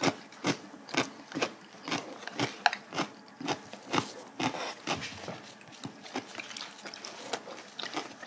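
Close-miked chewing of spicy stir-fried marinated duck: an irregular run of short mouth clicks and smacks, a few each second.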